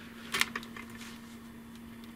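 A few small clicks about half a second in, from alligator-clip leads being handled and clipped on, over a faint steady hum.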